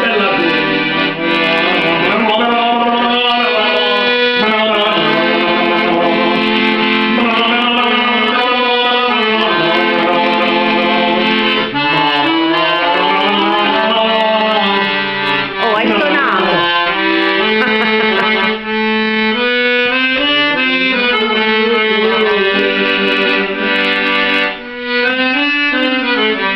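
Piano accordion playing a continuous tune with held chords, and a man's voice singing along over it.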